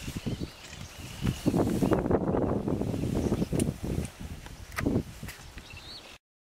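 Loud rustling and scuffing, with a few sharp knocks, over a couple of seconds in the middle, with faint high chirping calls in the first second and a half.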